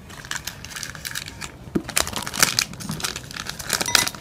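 Stirring a drink in a glass: an irregular run of crackling clicks, sparse at first and busier from about two seconds in.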